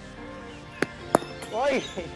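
A cricket ball bouncing on the net's synthetic pitch and then struck by the bat: two sharp knocks about a third of a second apart, the second louder, followed by a short shout. Music plays underneath.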